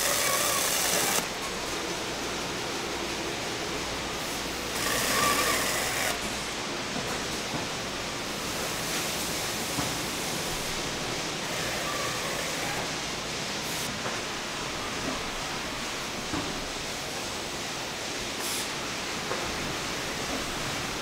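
Steady mechanical noise of a case-packing line running, with two brief louder bursts of noise, one at the very start and one about five seconds in.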